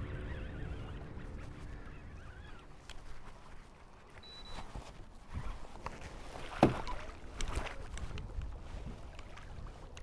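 Wind rumbling on the microphone over water lapping at a kayak, with scattered knocks and splashes as a hooked musky is brought alongside and netted; one sharper knock about two-thirds of the way through.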